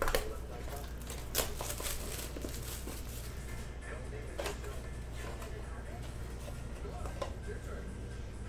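Plastic shrink wrap crinkling and a cardboard trading-card box being handled and opened by hand: a few short, sharp rustles over a steady low hum.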